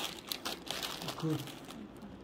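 A plastic snack packet crinkling as it is picked up and handled: a quick run of crackles, thickest in the first second.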